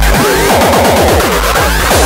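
Hardcore (gabber) electronic dance track. The distorted kick drum that pounds about three times a second drops out for a fast run of falling pitched hits, a break or build-up, and the full pounding kick returns at the very end.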